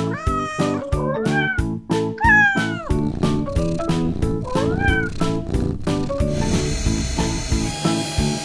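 A cat meowing four times in the first five seconds, each meow rising and then falling in pitch, over steady upbeat background music.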